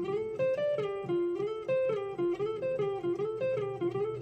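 Electric guitar playing a classic blues phrase on the pentatonic scale: a run of single picked notes in quick succession.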